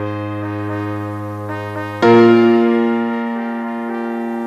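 Instrumental karaoke backing track of a slow ballad with no vocals: held chords over piano. A new chord is struck about two seconds in.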